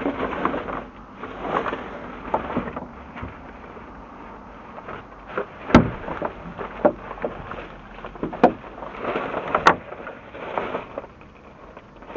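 Rubbish being rummaged through inside a dumpster: irregular rustling and shifting of bags and items, with a few sharp knocks, the loudest about six and ten seconds in.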